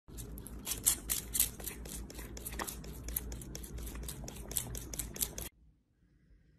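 A rapid, irregular series of sharp clicks and snaps over a low hum, stopping abruptly about five and a half seconds in.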